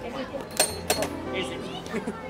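Faint background voices and a low steady hum, with two light clicks about half a second and a second in.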